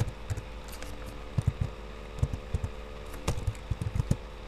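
Computer keyboard keys clicking at an irregular pace, about a dozen light clicks, over a steady low hum.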